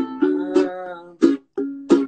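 Ukulele strumming chords as accompaniment to a sung song, with a held sung note trailing off in the first second and two more strums in the second half.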